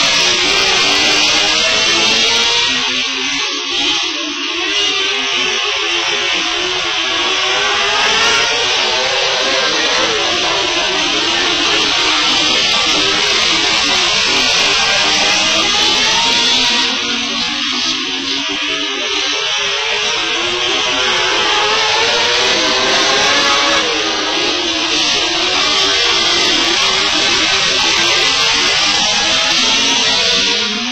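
Dirt-track race cars running laps, many overlapping engine notes rising and falling together, mixed with guitar music.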